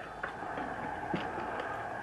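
A few faint clicks of soldiers' muskets being brought up to aim, over a low steady hiss.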